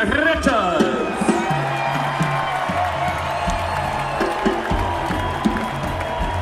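Live rock band vamping in a stadium, with bass notes setting in about a second and a half in, under a cheering crowd. A man laughs over the PA at the start.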